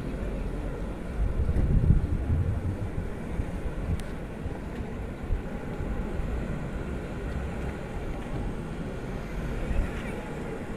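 Wind buffeting the microphone: a low rumble that gusts louder about two seconds in.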